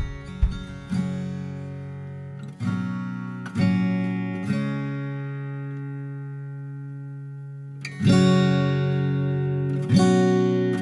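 Background music of acoustic guitar picking, with a chord left to ring for a few seconds in the middle before the picking starts again.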